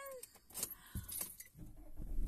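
A few light clicks and jingles from small objects being handled inside a car, then a low rumble that sets in about one and a half seconds in.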